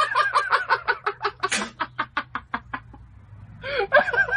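A person laughing hard in a rapid run of short, high-pitched bursts, about six a second, with a squeal about one and a half seconds in. The laugh dies down near the three-second mark and starts up again just before the end.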